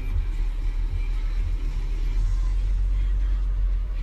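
Steady low rumble of a car heard from inside its cabin: engine and road noise in slow traffic.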